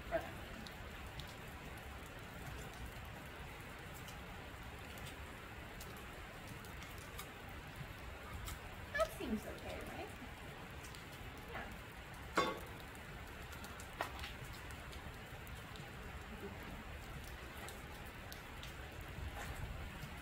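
Steady rain on a sheet-metal gazebo roof, with a few light clicks and knocks from a small folding metal stove and its cooking plate being handled, the sharpest about twelve seconds in.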